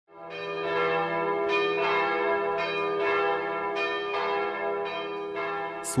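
Bells chiming a sequence of about ten strikes, each note ringing on and overlapping the next, over a steady low hum; the sound swells in at the very start.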